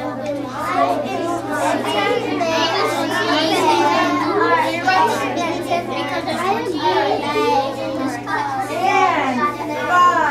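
Many children talking at once, an unbroken babble of overlapping young voices, with a steady low hum underneath.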